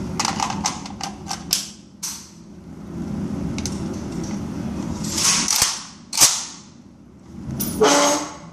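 Metal clicks and clacks of a PSL rifle being handled and readied: a quick run of sharp clicks at first, then two louder clacks about five and six seconds in, and another near the end, over a steady low hum.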